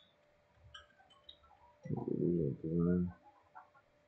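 A person's brief wordless hum, about two seconds in and lasting about a second, pitch dipping and then holding low.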